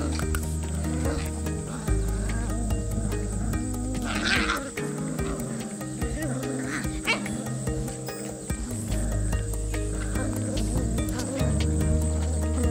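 Cavalier King Charles Spaniel puppies growling in play as they tug together at a toy, with a short higher cry about four seconds in, over background music of sustained chords and bass.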